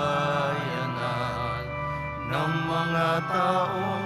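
Slow music: held, steady chords under a wavering melody line that moves to a new phrase a little past halfway.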